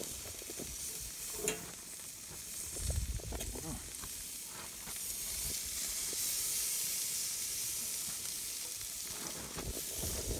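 Rattlesnake meat sizzling on the grate of a portable gas grill on low heat, a steady high hiss that swells about halfway through. A few light clicks come from metal tongs and a fork turning it.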